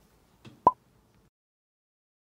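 A single short, sharp pop about two-thirds of a second in, preceded by a faint tap.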